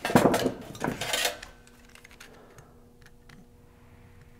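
Hand tools being handled on a workbench: about a second of clattering and rustling, then a few faint clicks.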